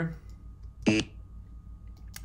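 A short recorded nasal murmur, the alveolar [n] hummed by a man, played back once from a lecture slide about a second in.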